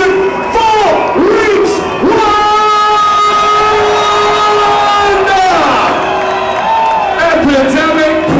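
Amplified vocal sounds through the PA: long held shouted or sung notes with several swooping drops in pitch, over a cheering crowd.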